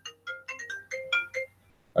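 Ringtone of an incoming call: a quick melody of short electronic notes that stops about one and a half seconds in.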